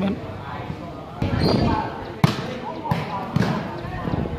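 Volleyball being struck by players' hands and arms during a rally. There is a sharp smack a little over two seconds in, then two lighter hits under a second apart, over spectators' chatter and shouts.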